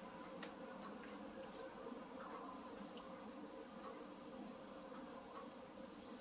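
A cricket chirping faintly in a steady, even rhythm of about two to three high-pitched chirps a second.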